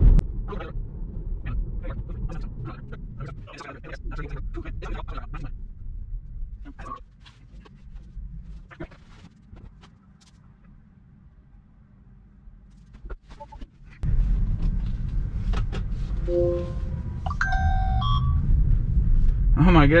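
Tesla cabin road rumble, broken by scattered clicks and knocks, dropping to a quiet stretch while the car is stopped, then coming back suddenly about two-thirds of the way in. Near the end a phone sounds a short alert of stepped, rising tones: a new DoorDash order coming in.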